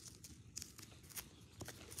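Near silence, with a few faint scattered clicks and rustles.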